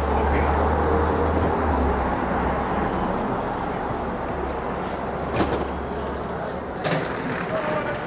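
City street traffic noise with a low rumble that fades out a little past the middle, and background voices of passersby. Two sharp clicks come about a second and a half apart near the end.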